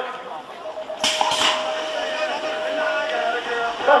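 BMX start gate dropping at the start of a race: a steady electronic start tone sounds, and about a second in the gate slams down with a sharp clang, followed by a second knock a third of a second later. The tone holds for more than two seconds as the riders roll off.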